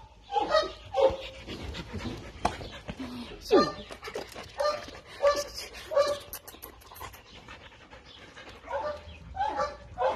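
Dogs whining and panting, with short pitched calls repeating every second or so and one longer falling whine a few seconds in.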